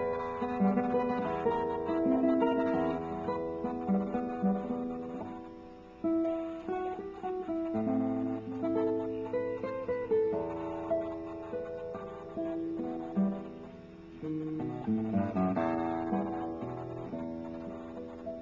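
Nylon-string classical guitar with a cedar top and Indian rosewood back, played solo fingerstyle: plucked melody notes over sustained bass notes. The playing dips briefly about 6 and 14 seconds in, and the last notes ring and fade near the end. Picked up by a laptop's built-in microphone.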